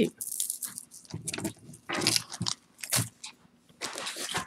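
Hands rummaging through a bag of costume jewelry: several short bursts of crinkling and light clinking.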